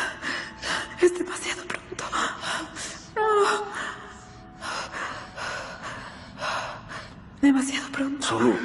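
A person breathing hard in repeated ragged gasps, with a short strained vocal moan a little past three seconds in.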